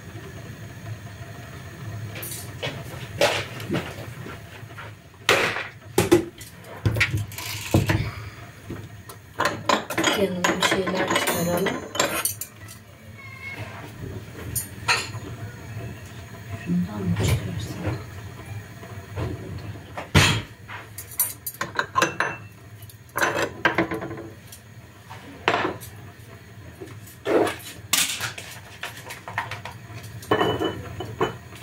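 Crockery and containers being handled on a kitchen counter: scattered sharp clinks and knocks of porcelain coffee cups, saucers and plastic tubs as a coffee tray is set out.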